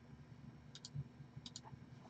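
Near silence: room tone with a few faint, short clicks in the middle stretch and a soft low thump about a second in.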